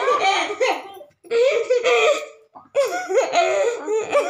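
Women laughing hard and high-pitched, in three long bouts broken by short pauses about a second in and about halfway through.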